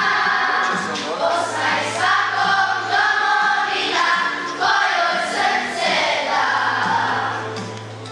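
A children's choir singing into microphones, the sound dying away near the end as the phrase closes.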